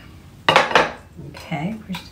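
Wire whisk clattering and scraping against a glass baking dish as it stirs marinade over pork chops, with the loudest clatter about half a second in.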